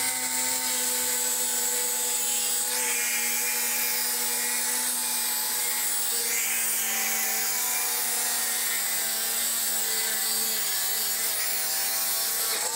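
Angle grinder with a diamond multi-purpose cutting blade slicing along a foam-cored sandwich panel: a steady motor whine under continuous cutting noise.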